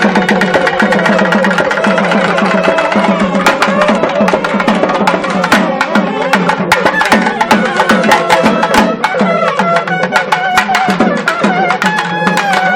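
Two nadaswarams, South Indian double-reed wind instruments, play a sustained, ornamented melody together over fast, dense thavil drumming.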